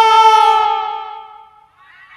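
A man's singing voice holding one long, high note of a naat through a microphone and loudspeakers, tailing off and fading out about a second and a half in. A faint hiss of background noise follows.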